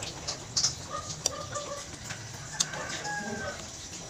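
Close-up mouth sounds of eating soup from a spoon, with a few sharp wet clicks. Short clucking bird calls, like chickens, sound in the background, with one longer arching call near the end.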